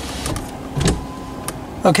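Electric window motor of a first-generation Ford Focus running steadily as a window is worked, stopping shortly before the end.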